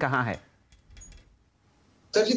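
A man's speech trails off, then a pause holding a few faint, light clicks about a second in.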